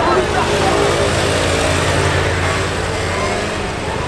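A car's engine running close by as the car moves slowly past, a steady low hum that eases off toward the end, over street noise and voices.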